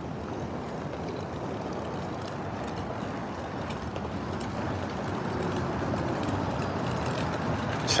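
Plastic wheels of a folding wagon rolling over rough asphalt, a steady rumbling rattle that grows a little louder toward the end.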